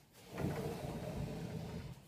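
A wooden sliding interior door rolling along its track, a steady rumble lasting about a second and a half.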